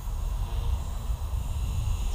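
Wind buffeting the microphone in an uneven low rumble, over the faint steady whine of a small electric RC helicopter in flight.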